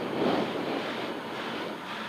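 Renault Clio N3 rally car's four-cylinder engine running steadily at idle, heard from inside the cabin as an even, noisy rumble.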